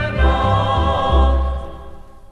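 A choir singing with instrumental accompaniment over a low bass line. The held chord dies away near the end as the song finishes.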